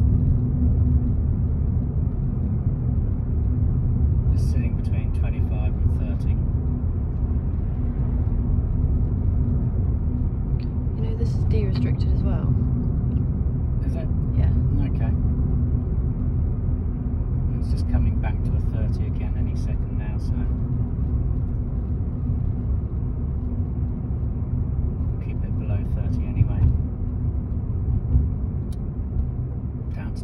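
Steady low rumble of engine and tyre noise heard inside a Ford car's cabin as it is driven at a constant, gentle 20 to 25 mph, with a few brief, faint higher sounds coming and going over it.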